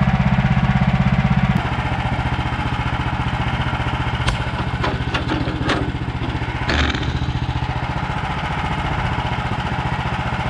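Gas engine of a Woodland Mills HM130MAX bandsaw sawmill running steadily, turning quieter and lower about a second and a half in. Several sharp wooden knocks and clatters come in the middle as a freshly sawn pine board is handled on the mill bed.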